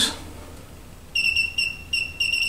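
Electronic beeper sounding a quick run of three short, high beeps on one steady pitch, starting about a second in, over a faint mains hum.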